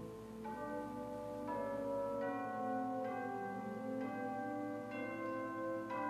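Soft, slow keyboard music: held notes layered into chords, a new note entering about once a second.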